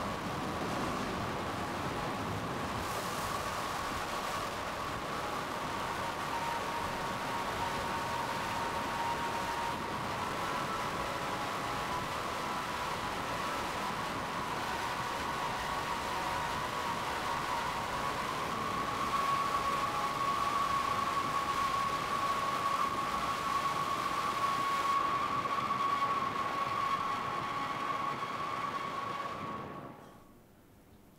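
Soundtrack of tornado footage playing back: a steady roar of storm wind with a sustained high tone running through it. It grows louder about two-thirds of the way in, then stops abruptly at the end.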